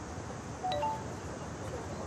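Smartphone text-message alert chime: a few short pitched notes in quick succession about three-quarters of a second in, over steady outdoor background noise.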